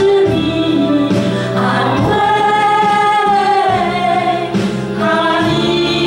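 A small group of women singing a Mandarin worship song together into microphones, holding one long note through the middle of the phrase.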